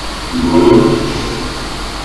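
Afterlight Box ghost-box software output: a steady hiss with a short, drawn-out, distorted voice-like sound about half a second in that fades by about a second and a quarter.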